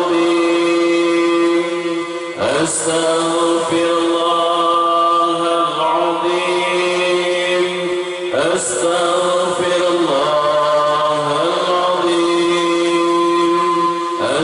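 Male voices chanting zikir through a microphone and PA, long drawn-out phrases on held notes. A short break and a new phrase come about every six seconds, twice in this stretch.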